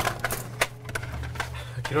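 Small cardboard medicine boxes being rummaged through on metal shelving: a quick, irregular series of light clicks and knocks as boxes are picked up, shifted and set back down.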